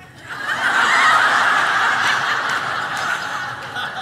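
A large audience laughing together, swelling within the first second and slowly dying away.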